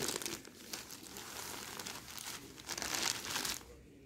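Linen saree fabric rustling and crinkling as hands unfold and spread it, louder near the start and again around three seconds in.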